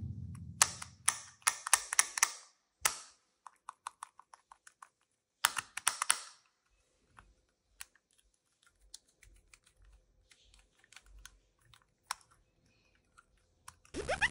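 Hard plastic shark toy being handled and turned in the fingers, giving light clicks and taps: quick clusters in the first couple of seconds and again around five to six seconds in, then only a few scattered ticks.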